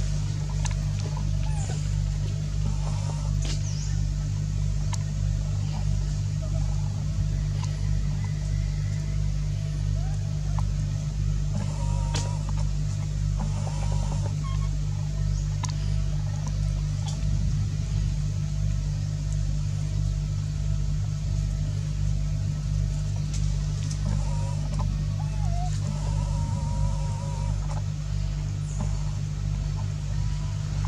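A steady low motor hum, like an engine or generator running at idle, with a regular pulse to it. A few faint, brief higher-pitched sounds come and go over it.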